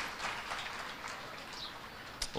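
Faint applause from a seated audience, fading slowly.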